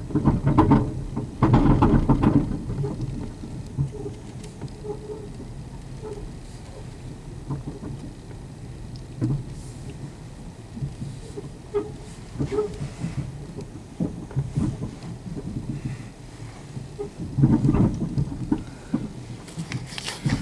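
Inside a car creeping along at low speed while towing a trailer: steady low engine and road noise from the cabin, with louder rough stretches about a second in and again near the end.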